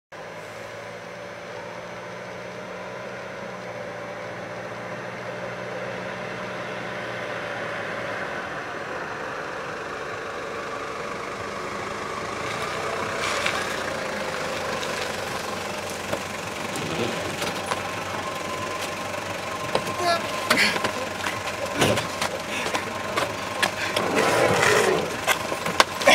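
A van's engine running as it approaches, its hum growing louder until it pulls up close. This is followed, from about two-thirds of the way in, by a series of sharp knocks and clatter as the van's sliding door is worked and people scramble around the vehicle.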